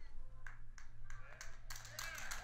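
A pause between spoken phrases, holding only faint background: a steady low hum with a few soft clicks.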